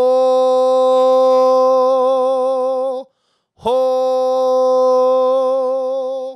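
A man's voice singing two long held 'ho' vowels on the same mid-range note, each about three seconds, with a short break between them and a light vibrato. It is an open, resonant middle-register tone driven by breath pressure rather than by vocal-fold tension.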